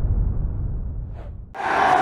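The low rumbling tail of an intro boom sound effect, dying away over about a second and a half, then an abrupt cut to room noise.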